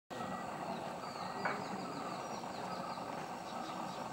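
A bird calling: a quick run of short, high chirps, each sliding downward in pitch, over a steady hiss of forest background, with a single click about one and a half seconds in.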